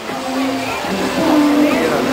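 Water cascading down a stone water-wall fountain into its basin, a steady rush. Faint voices sound over it.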